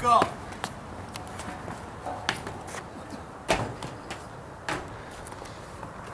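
Four sharp knocks about a second apart, the loudest about three and a half seconds in: shoes landing on picnic tables and concrete as people jump across them. A short laugh or shout right at the start.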